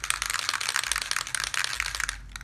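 Aerosol spray paint can being shaken hard, its mixing ball rattling rapidly and continuously inside to mix the paint before spraying.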